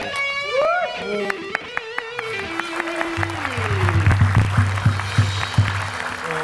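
Electric guitar playing: a few single plucks and a held note, then about halfway through a low, driving riff with rapid picked strikes, about five a second.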